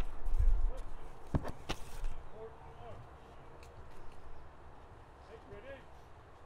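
A rifle firing party getting ready for a volley: a low thump at the start, two sharp clicks of rifle handling about a second and a half in, then faint, distant shouted drill commands, short and clipped. No shots are fired yet.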